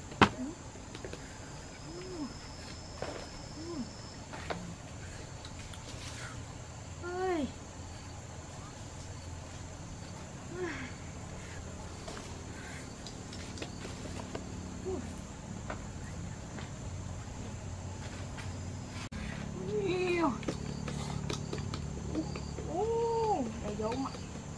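Short wordless 'ooh' sounds from a person's voice, each rising and falling in pitch, every few seconds and more often near the end. A sharp knock comes right at the start.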